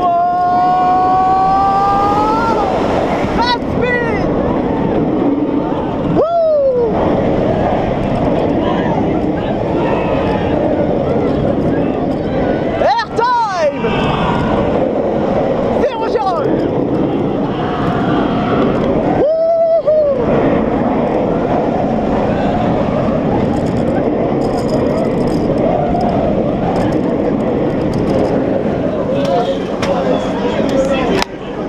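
Onboard sound of a B&M inverted roller coaster train running on nylon wheels through its layout: a steady rush of wind and track roar, with riders yelling several times, rising and falling in pitch.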